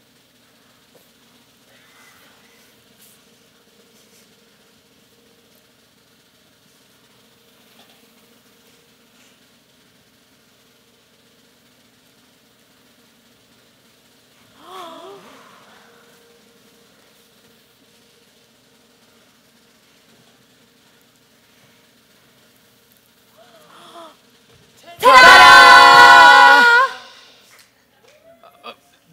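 Low steady hum with faint, brief voices, then near the end a very loud held vocal sound lasting about two seconds, many pitches stacked and slightly wavering.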